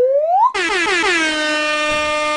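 Air-horn sound effect played from a soundboard. After a rising whoop, a long horn blast sets in about half a second in, dips in pitch at first, then holds one steady note for nearly two seconds before cutting off.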